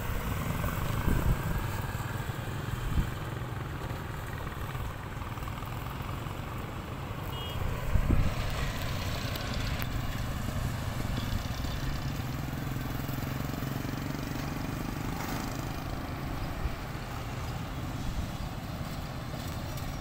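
Street traffic: cars, motorcycles and a jeepney driving past with a steady engine rumble, with louder passes about a second in and about eight seconds in.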